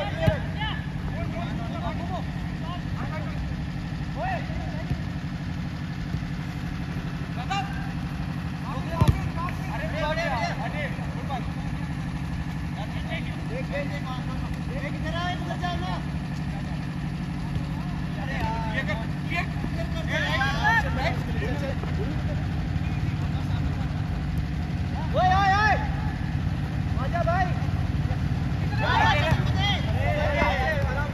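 Players' shouts and calls on a football pitch over a steady low hum, with two sharp thuds of the ball being kicked: one right at the start and one about nine seconds in.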